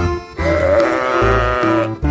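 A single sheep bleat, about a second and a half long with a wavering, quavering pitch, over background music with a steady bass line.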